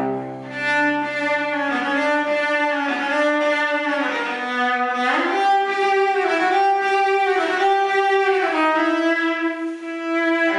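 Cello played with the bow: a slow line of long sustained notes, each lasting about a second, stepping up in pitch about halfway through. This is a test of how the instrument sounds after its bridge was adjusted: wood was set into the notches where two strings sat too deep, so the strings now rest on top of the bridge and can vibrate freely.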